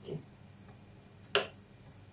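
A single sharp click of glass on glass about a second and a half in, as the top pane is nudged into place over the bottom pane.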